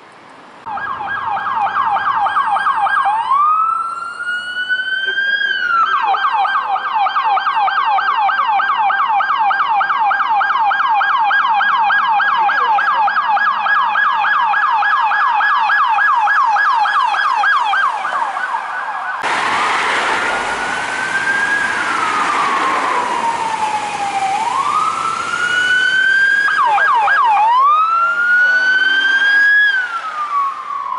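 Police siren on LAPD Ford Police Interceptor Utility SUVs running code 3. It sounds a fast yelp, breaks into a single rising wail about three seconds in, and goes back to the yelp. In the last third it changes to a slow rising-and-falling wail over road noise, with a quick burst of yelp near the end.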